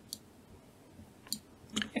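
A few faint, sharp clicks from a computer mouse's buttons, spaced out over quiet room tone.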